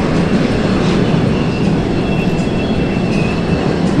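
F-5N Tiger II jet fighters taxiing past on the ground, their twin J85 turbojets making a steady loud rumble with a thin high whine coming in about halfway.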